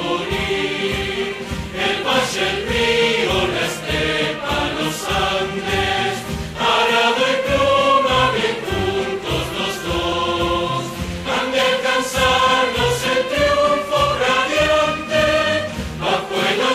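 Many people standing in a hall and singing an anthem together in chorus, over music.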